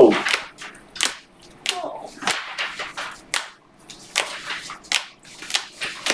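Rigid plastic card holders clicking and sliding against each other as a stack of them is flipped through by hand. There are sharp clicks about every half second, unevenly spaced, with short scrapes between them.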